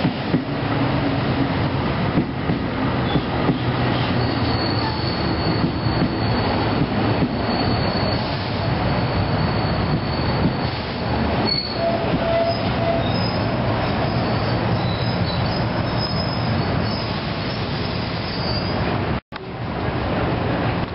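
NJ Transit bilevel commuter coaches rolling along the platform, a steady rumble of wheels on rail with a thin high wheel squeal from a few seconds in until near the end. The sound cuts out for an instant just before the end.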